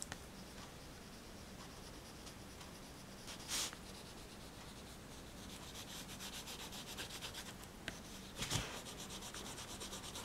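A pastel stick rubbed and scribbled over paper, faint, with a run of quick short strokes in the middle and two brief louder scrapes, one a few seconds in and one near the end.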